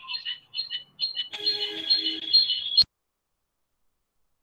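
Electronic tones: a few short high beeps, then a steady chord of several tones held for about a second and a half. It cuts off suddenly a little under three seconds in, leaving dead silence.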